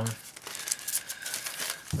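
Thin clear plastic comic-book bag crinkling as a comic is handled in it: a soft, irregular rustle.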